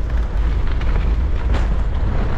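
Wind buffeting the microphone of a camera worn while riding a mountain bike, a loud, steady low rumble, with faint tyre noise from the gravel path under it.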